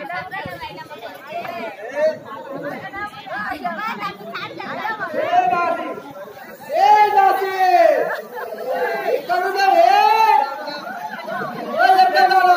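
Speech only: several voices talking over one another, then from about six and a half seconds a louder voice in long, drawn-out phrases.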